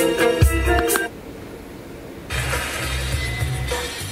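Music playing through a car stereo cuts off about a second in. After a short lull, different audio starts playing from the stereo as it is switched over to its auxiliary input.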